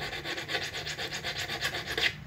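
Small metal file scraped in quick, even short strokes along the inner cutting edge of a pair of nippers, taking off the burr left by sharpening.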